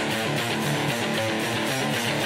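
Electric guitar playing a fast riff of picked notes, the intro of a post-hardcore song played live, with no heavy low end under it yet.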